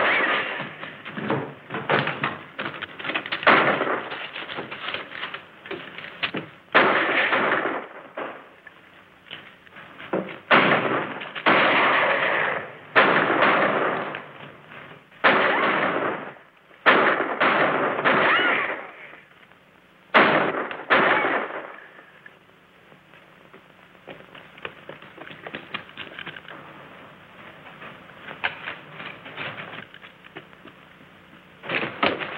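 Gunfight on an old film soundtrack: revolver shots, a dozen or more, each ringing out with an echo, spaced a second or two apart. After about twenty seconds the shooting stops and only faint scattered sounds remain.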